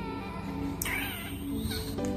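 Soft background music with sustained tones, with a short, high-pitched wavering call about a second in, just after a sharp click.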